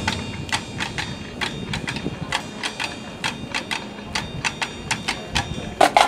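Marching band percussion playing a steady ticking pattern of sharp, slightly ringing clicks, about three a second, with a louder strike near the end.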